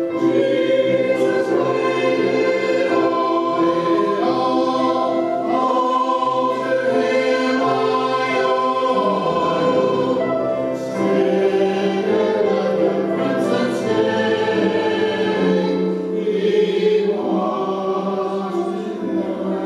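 Small church choir of mixed voices singing a sacred piece, with long held notes.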